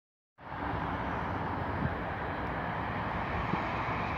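Steady noise of road traffic on a highway, starting suddenly about half a second in.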